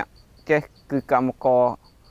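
A man speaking, with a cricket chirping in the background: a quick, even train of short high chirps that runs under and between his words.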